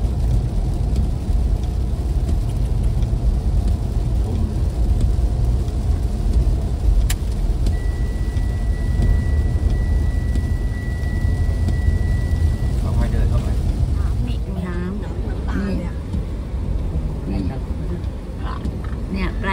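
Low, steady rumble of tyres and engine heard from inside a car cabin, driving on a wet road in rain with the wipers running. About seven seconds in there is a sharp click, then a steady high beep that holds for about five seconds.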